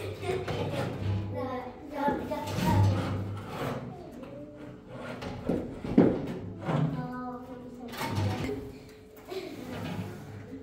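Several people talking over background music, with one sharp knock about six seconds in.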